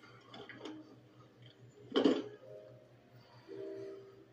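Film soundtrack playing through a TV's speakers during a tense pause: a few faint knocks, one sharp knock about two seconds in, then low held music tones near the end.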